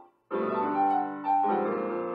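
Digital keyboard played with a piano sound: a fantasia on a minuet theme, chords and melody notes in a steady flow. The sound dies away at the start, there is a brief silence, and the playing resumes about a quarter second in.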